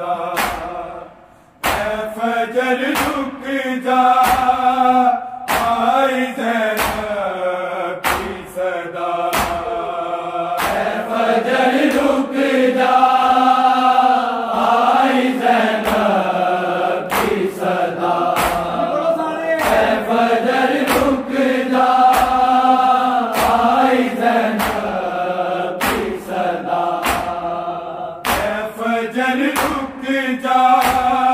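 A noha (Urdu mourning lament) sung by a group of men in long held chanted lines, over a crowd's hand-on-chest beating (matam) in a steady rhythm of sharp slaps. The sound drops off briefly about a second in, then the chant and slaps resume.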